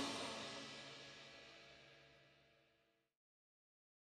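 A band's closing chord with guitar, violin and cymbals ringing out, fading away over about a second and dying out entirely about three seconds in, leaving silence.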